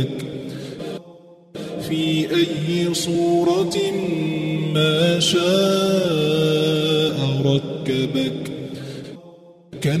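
Quranic recitation chanted in melodic tajweed style: a voice holding long, slowly bending tones. It pauses briefly about a second in and again near the end.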